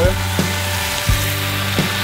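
Sliced steak, onions and peppers sizzling in butter on a hot steel disc cooker, a steady frying hiss. A few sharp taps come through about every two-thirds of a second.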